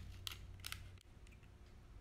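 Faint crinkling clicks of a paper cupcake liner as a pipe cleaner is poked through its center, twice within the first second.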